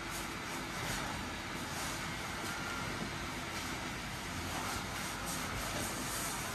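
Battery-powered blower fan of an inflatable costume running steadily, with a few faint rustles of the inflated fabric as the wearer moves.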